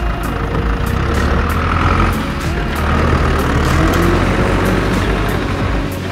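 Tractor engine sound running steadily, laid over background music.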